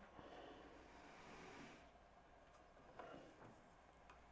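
Near silence: faint handling noise as the winch's folding metal tower is raised, a soft rustle for the first two seconds and a faint knock about three seconds in.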